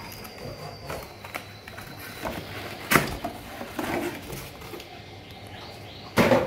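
Cardboard packaging being handled: scattered rustles and light knocks, with one sharp knock about three seconds in.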